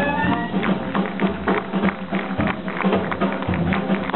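Live Dixieland jazz band: a horn line slides and dies away just after the start, then the drum kit and upright string bass carry the beat. Sharp drum-stick strokes land a few times a second.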